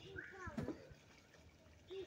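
A child's voice: a short vocal sound in the first second, then quiet.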